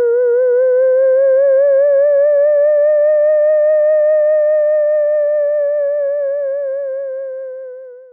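A single sustained theremin-like electronic tone with a steady, quick vibrato, loud and clean. Its pitch drifts slowly up and then back down, and it fades away near the end: a music sound effect laid over the footage.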